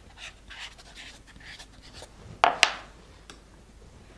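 Plastic modelling tool rubbed over a thin sugar paste petal on a foam pad, soft rubbing strokes a few times a second as the petal edges are thinned. About two and a half seconds in, two sharp knocks in quick succession, the loudest sounds.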